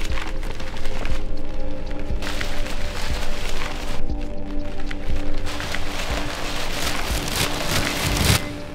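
Newspaper pages rustling and crumpling in three crackling bursts, the last and loudest near the end, over a sustained music drone.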